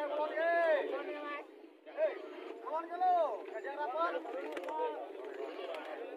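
Men's voices shouting drawn-out calls, each rising and then falling in pitch, over the murmur of a crowd.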